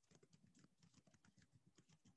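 Faint typing on a computer keyboard: a quick, irregular run of light keystrokes, barely above silence.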